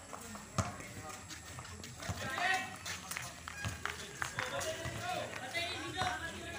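Players and onlookers shouting and calling out during an outdoor basketball game, with a few sharp knocks of the basketball bouncing on the concrete court. The loudest knock comes about half a second in.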